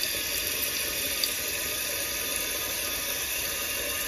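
Water running into a 2007 Western Pottery Aris toilet's tank through the fill valve as the tank refills: a steady hiss.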